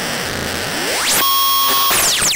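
Noisy breakcore electronic music: a dense hiss, then a synth sweep that climbs steeply about half a second in and holds as a buzzy sustained chord, dropping away near the end.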